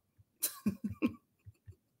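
A woman's short burst of laughter, a breathy onset followed by three or four quick pulses, about half a second in.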